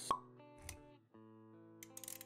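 Sound effects and music of a motion-graphics intro animation: a sharp click with a short ring just after the start, a softer low hit a little later, then held musical chords with small clicks near the end.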